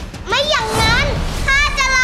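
Several children wailing and whining loudly: a high cry rising and falling about half a second in, then a few children joining in long, held high wails near the end, a fake tantrum of hunger.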